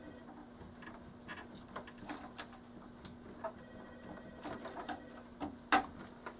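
Small plastic clicks and handling noises of wiring harness connectors being worked loose by hand, with a sharper click near the end, over a faint steady hum.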